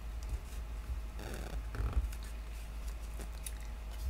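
Cardstock being handled and pressed together by fingers: faint paper rustles and light taps, with a short burst of rustling a little over a second in, over a steady low hum.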